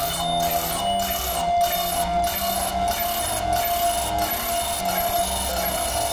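Live-coded electronic music: sequences of short synthesized notes stepping in pitch, high and low, over a steady held tone. The texture stutters with brief dropouts about every half-second through the first few seconds.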